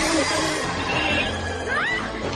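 Horror-comedy film soundtrack: music mixed with a monster's animal-like cries, with a rising shriek near the end.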